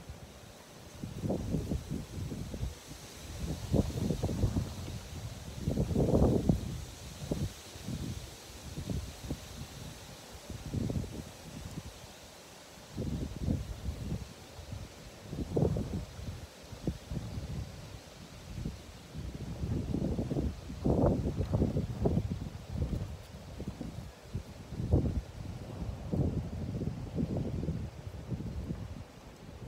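Gusty wind buffeting the microphone in uneven low rumbling gusts, strongest around five seconds in and again a little after twenty seconds in.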